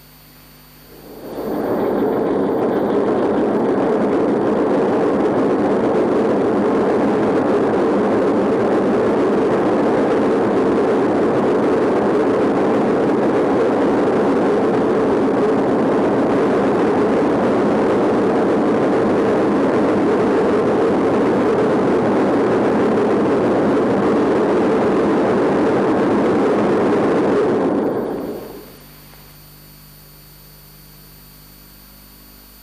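Steady, loud engine-room noise of a large B&W two-stroke marine diesel engine running. It fades in about a second in and fades out near the end.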